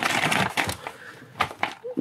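Stiff clear-plastic blister packaging and its cardboard backing crackling and crinkling as fingers pry a small toy part out, with a couple of sharp snaps in the second half.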